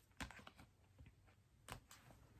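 A few faint clicks and taps from tarot cards being handled, the sharpest one near the end, in otherwise near silence.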